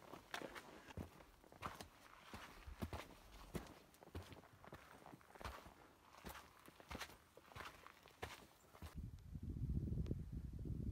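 Hiker's footsteps on a rocky forest trail, about one and a half steps a second. About nine seconds in, the steps stop and a steady low rumble takes over.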